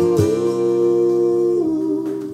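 A woman's voice holding one long sung note, stepping down in pitch near the end, over acoustic guitar.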